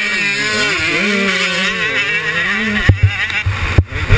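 KTM 125 two-stroke motocross engine revving, its pitch rising and falling with the throttle. About three seconds in it drops to a lower note under a run of sharp knocks and buffeting.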